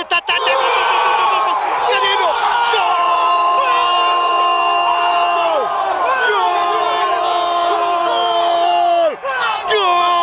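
A man's long drawn-out goal shout, held on one note for a few seconds at a time and taken up again several times with a short breath near the end. A crowd cheers under it.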